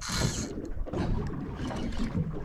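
Spinning reel's drag giving line in a short hissing burst at the start as a hooked fish, which the angler takes for a snapper rather than a skippy, pulls against the bent rod, over a steady low rumble of wind and water around a small boat.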